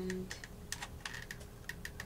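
Light, irregular clicking of a hot glue gun's trigger and feed mechanism as glue is squeezed onto felt, a few clicks a second.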